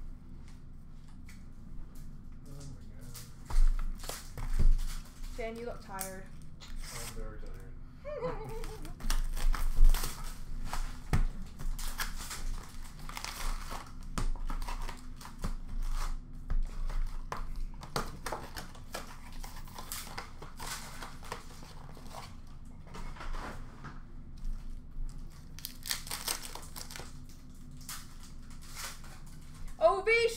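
Hockey card packs being torn open and their wrappers crinkled by hand, an irregular run of crackles and short tearing sounds, with cards riffled in between.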